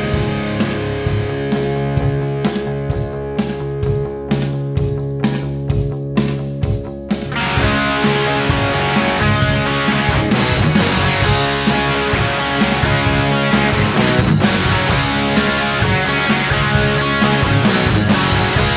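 Instrumental break of a rock song, guitar-led with drums and no vocals. About seven seconds in, the full band comes in louder and denser.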